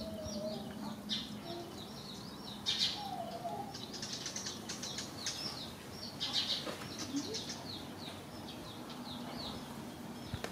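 Small birds chirping: a continuous run of short, high chirps, with louder flurries about three, four and six seconds in.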